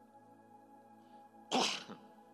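A man sneezing once into a handheld microphone, a single short loud burst about one and a half seconds in.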